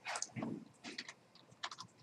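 Typing on a computer keyboard: a handful of short key clicks in small clusters, as a web address is typed in.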